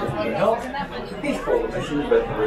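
Chatter of several people talking at once, no words clear.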